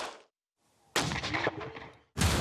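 A single sudden boom like a heavy gunshot or blast, about a second in, after a short silence. It dies away over about a second.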